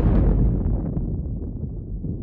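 Rumbling tail of a deep boom hit at the close of the soundtrack music, dying away slowly, its high end fading first and a low rumble lingering.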